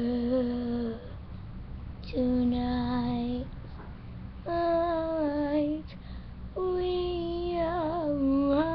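A young girl singing four long held notes, each about a second long with short breaks between them, the last note wavering in pitch near the end.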